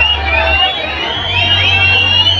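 Live norteño banda music: a sustained low sousaphone bass note that changes pitch about a second in, with voices shouting and whooping over it.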